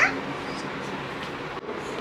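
Steady room background hiss with no clear event, opening with the tail end of a voice rising in pitch.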